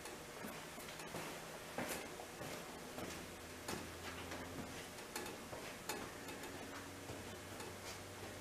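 Quiet room tone with a wall clock ticking faintly over a low steady hum.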